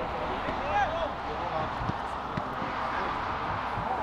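Distant voices calling out across an outdoor football pitch, a couple of short shouts, over a steady background hiss of outdoor noise.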